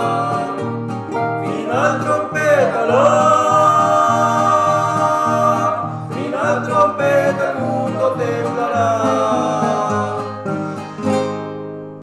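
Acoustic nylon-string guitars, one a small requinto, strumming and picking a trio-style hymn accompaniment, with voices holding long wavering sung notes. The song ends on a final chord that dies away near the end.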